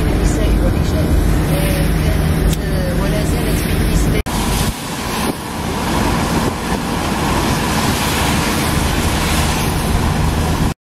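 Road noise inside a moving car on a rain-wet road: a steady low rumble of engine and tyres. About four seconds in the sound drops out for an instant and returns brighter, with more hiss from tyres on wet asphalt.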